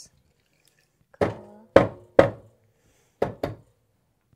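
Espresso portafilter knocked against a knock box bar to dump the spent coffee puck after a shot: three heavy knocks, then two more about a second later.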